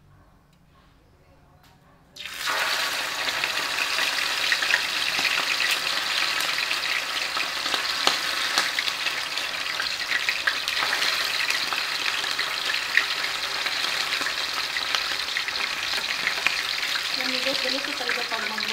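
Marinated whole fish going into hot cooking oil in a frying pan: a sudden loud sizzle starts about two seconds in and runs on steadily, dotted with sharp crackles of spattering oil.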